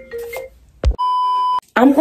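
A single electronic beep: one steady high tone about half a second long that cuts off abruptly. A short sharp click comes just before it.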